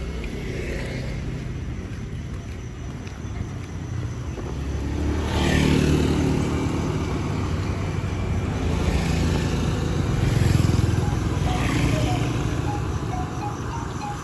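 Motor scooters and other street traffic passing, engines swelling twice as vehicles go by, about five seconds in and again near ten seconds, over a steady low rumble.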